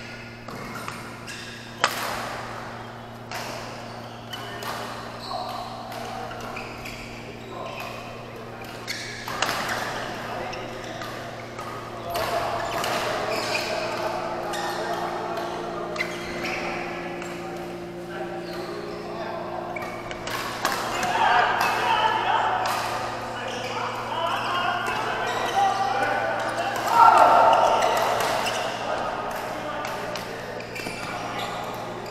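Badminton rackets striking a shuttlecock during rallies in a large echoing hall: sharp cracks at irregular intervals. Players' voices and calls rise in the second half, the loudest a shout near the end.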